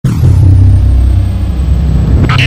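Logo intro sound effect: a loud, deep, steady rumble, opening with a brief high falling sweep.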